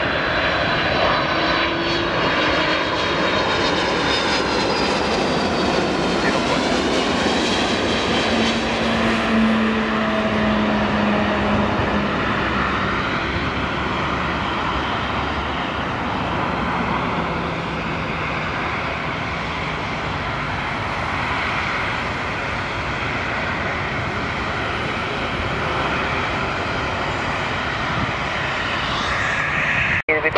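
Jet airliner's engines during a landing. For the first several seconds the engine whine glides down in pitch as the aircraft passes close by, then it settles into a steady, even jet noise as it touches down and rolls out on the runway.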